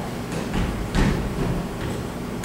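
Footsteps on a stage floor: a few heavy steps as someone walks quickly across, the loudest about a second in.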